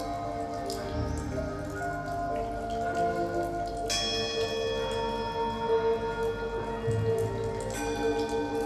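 Ambient music: layered sustained ringing tones, like bells or singing bowls, held over a low drone, with scattered faint clicks and drips. A new cluster of bright ringing tones comes in about four seconds in.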